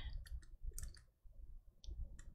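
A few faint, scattered clicks in a near-quiet pause.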